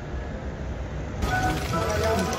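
Outdoor background noise: a steady low rumble with hiss. About a second in it switches abruptly to busier street ambience with faint distant voices.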